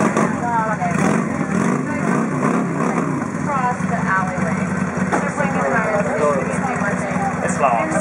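Motorcycle engine idling with a steady low note that steps up slightly about five seconds in, with people talking over it.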